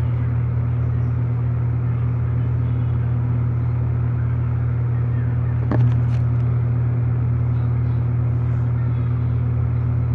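A steady, loud low hum runs unchanged throughout, with one brief click a little before six seconds in.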